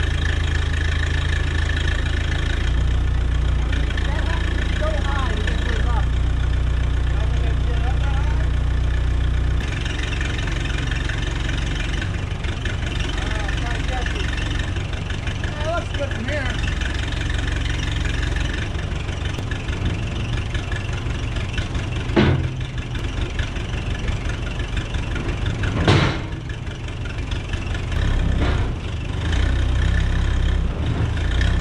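Backhoe loader's engine running under load as its bucket pushes a box truck body up onto a trailer, the engine note easing about a third of the way in. Two sharp metal bangs ring out near the end as the body shifts on the trailer.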